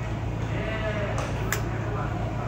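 A young child's voice with a wavering pitch, lasting under a second, then a single sharp tap about a second and a half in, over a steady low hum.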